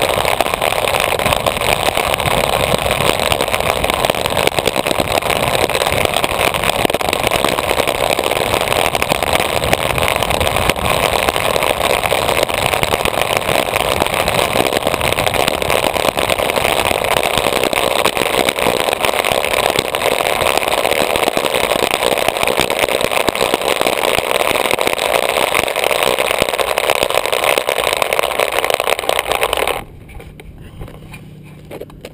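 Steady rush of wind on the camera mic and roar of urethane wheels rolling on asphalt as a downhill gravity board descends at speed, near 50 mph. The noise drops away suddenly at the very end.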